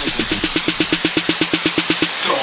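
Tech house track in a breakdown with the kick drum dropped out: a rapid, even stutter of short repeated hits, about eleven a second, like a roll building toward the drop.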